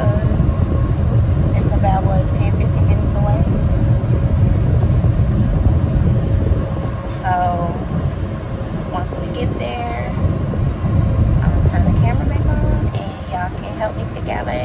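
Steady low rumble of road and engine noise inside a moving car's cabin, with brief snatches of voices now and then.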